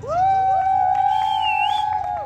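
A loud, high-pitched held tone that slides up at the start and stays on one note for about two seconds, with a few other pitches joining in, then stops.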